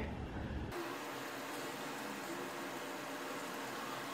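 Steady low hiss of room tone, with no distinct event; its character changes abruptly just under a second in, as at an edit.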